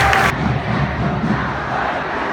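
Football stadium crowd: supporters shouting and cheering, a dense wash of many voices, with a louder burst of shouting that breaks off abruptly a fraction of a second in.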